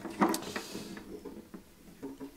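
Acoustic guitar being turned over and set down on a carpeted bench: a handling knock and rustle about a quarter second in, followed by faint ringing from the strings that fades away.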